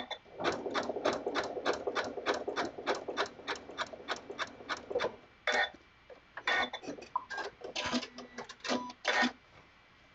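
Janome MC9450 computerized sewing machine stitching a satin stitch at slow speed, an even clack of about three to four stitches a second, which stops about halfway through. Then come a few irregular clicks and knocks.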